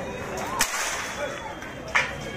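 Two sharp smacks of a wooden stick striking, one about half a second in and one near the end, over murmuring voices.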